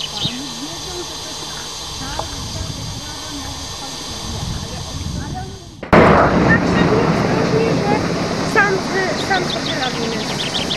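Indistinct chatter of a group of people walking outdoors, with birds chirping in the background. About six seconds in, the sound jumps suddenly louder and becomes closer and noisier.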